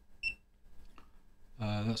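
A single short, high electronic beep from a FNIRSI LC1020E handheld LCR meter as it boots after being switched on, followed by a man's voice near the end.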